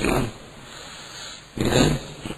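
A man's voice in two short bursts separated by a pause, over a steady background hiss.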